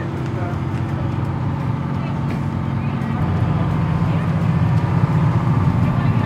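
Tender boat's engine idling with a steady low hum that grows slightly louder, while the boat waits to depart.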